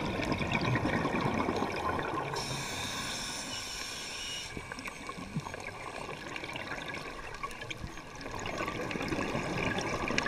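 Scuba diver breathing underwater through a regulator, heard from a camera in its housing. A bubbling exhale comes first, then a hissing inhale about two and a half seconds in. After a quieter stretch, another exhale bubbles up near the end.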